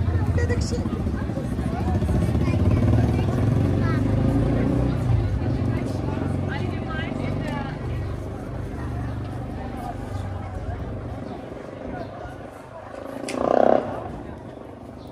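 Passers-by talking on a cobbled street over the low rumble of a slow car engine, which fades after the first half. A brief louder sound comes near the end.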